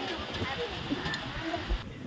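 Indistinct voices over steady noisy outdoor background, which drops away abruptly near the end as the recording cuts to another take.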